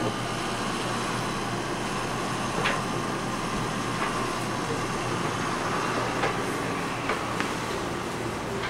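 A steady machine-like hum with faint sharp clicks about four times.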